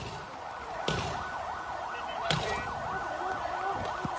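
Faint emergency-vehicle siren, its pitch rising and falling rapidly, about three times a second. Two brief knocks are heard, about a second in and a little past the middle.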